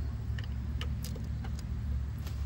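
Electric mobility scooter rolling over brick pavers: a steady low rumble with scattered light clicks and rattles as it goes.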